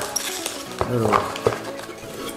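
Handling noise as a jar is lifted out of a cardboard box, with a few sharp knocks, over steady background music.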